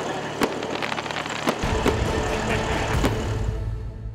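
Fireworks going off: sharp cracks and bangs every half second to a second over a steady outdoor hiss. About a second and a half in, a deep low rumble joins, and the sound begins to fade near the end.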